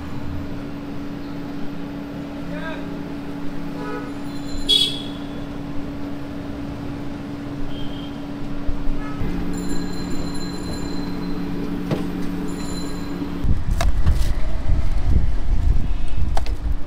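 Roadside street ambience: a steady low hum with background voices and passing traffic, then a louder low rumble from about 13 seconds in.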